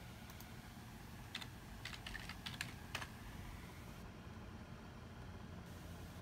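Computer keyboard keys clicking as a short comment is typed: a quick, uneven run of keystrokes in the first three seconds, then another single click near the end.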